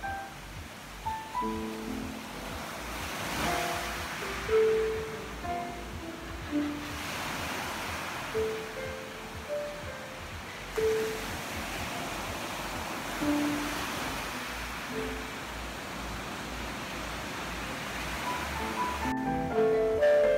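Slow, sparse solo piano improvisation, mostly single notes with long gaps, over the wash of ocean surf breaking on a beach, which swells every few seconds. A quicker run of notes starts near the end.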